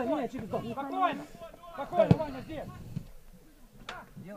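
A male football commentator speaking in short phrases in Ukrainian, then falling quiet near the end.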